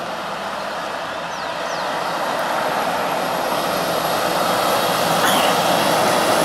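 Loaded Volvo FH 540 tractor-trailer climbing a steep grade under load, its engine and turbo noise swelling steadily louder as it approaches and draws level, with a thin high whistle running over it.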